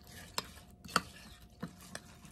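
A metal spoon stirring oats and almond milk in a ceramic bowl, with about four sharp clinks of the spoon against the bowl.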